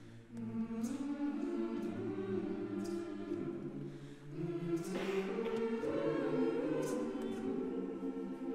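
Mixed choir singing held chords that shift from one to the next. The sound swells, fades around the middle, then swells again with higher voices entering.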